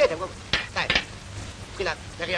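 Brief snatches of a person's voice over a steady hiss.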